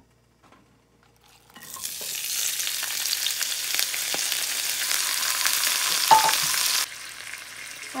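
Chopped tomato, olives, garlic and baby spinach frying in hot olive oil in a cast-iron skillet. A loud sizzle sets in about a second and a half in. A sharp knock comes near the end, and the sizzle then drops suddenly to a quieter level.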